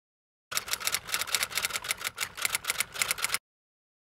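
Typewriter typing sound effect: a quick run of key strikes, about six or seven a second, lasting about three seconds and cutting off abruptly.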